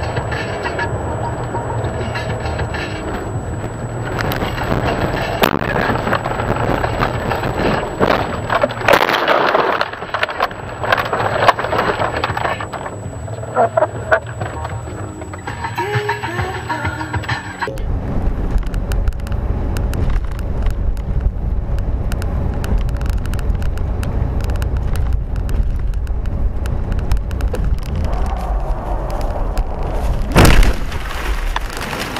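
Car-cabin sound picked up by a dashcam: steady engine and road noise with music playing, and a few loud knocks about ten seconds in. A little past halfway it changes suddenly to a heavier, steady low rumble with many small clicks.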